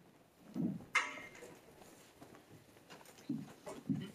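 Quiet room with a sharp rustle about a second in, like papers handled at a lectern, and a few short, low vocal sounds from a person near the end.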